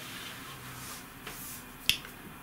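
Faint rustle of hands moving over a woven skirt laid on a table, with one sharp click just before the end.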